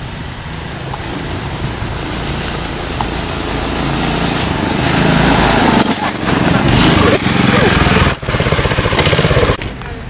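Small go-kart engine running as the kart drives toward the camera, growing steadily louder over the first five seconds and staying loud until it cuts off suddenly near the end.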